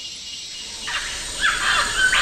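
Bird calls begin about a second in, a few loud arching, sweeping calls in a row after a quiet stretch of faint hiss.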